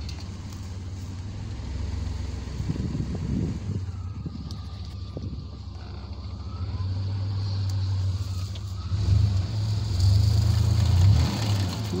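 A 1990 Chevrolet K1500 pickup's engine running as the truck drives slowly through tall grass, a steady low note that gets louder in the second half.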